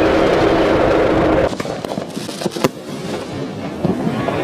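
Fireworks: a loud rushing noise for about a second and a half, then scattered crackles and sharp pops.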